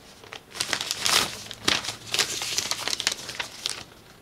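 Paper envelope being opened by hand and the letter inside pulled out and unfolded: a quick run of paper crinkling and rustling.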